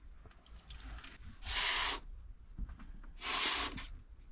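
Fabric rustling twice as a blanket is handled and hung over a van's front windows, each swish about half a second long.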